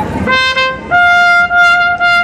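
Solo trumpet: a short lower note about a third of a second in, then a step up to a higher note held long and steady.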